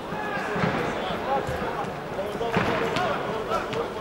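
Football kicked between players, a few dull thuds of boot on ball, with players' shouts from the pitch over the open-air background.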